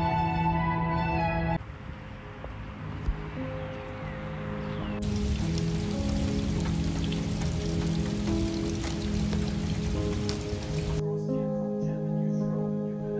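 Rain falling on pavement, a steady hiss under soft background music. It comes in about two seconds in, grows brighter and fuller about five seconds in, and cuts off suddenly near the end.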